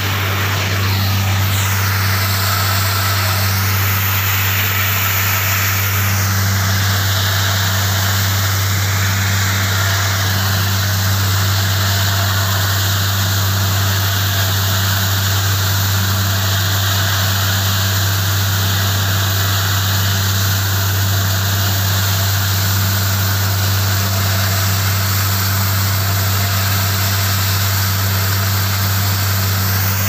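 Truck-mounted borewell drilling rig running steadily while drilling, its engine and air compressor giving a loud, constant low hum under a hiss, as water and mud spray out of the borehole. A high whine in the mix dips slightly in pitch about six seconds in.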